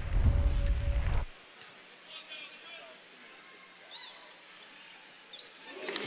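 Basketball arena sound: a loud low rumble for just over a second at the start, then quiet court ambience with a few faint high squeaks.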